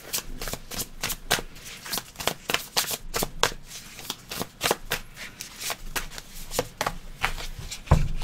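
Tarot deck being shuffled by hand: a quick, uneven run of clicks as the cards slide and tap together, several a second and without pause.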